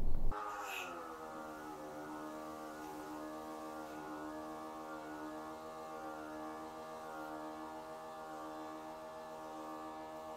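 Electric pressure washer running: a steady, faint humming whine that sinks in pitch over the first second, as the motor comes under load, and then holds steady.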